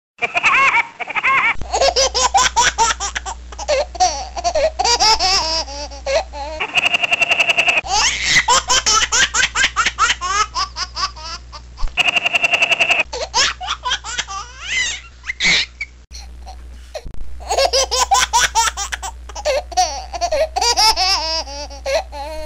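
A run of recorded laughter clips spliced one after another, several different voices laughing in quick bursts, with abrupt cuts between clips every few seconds.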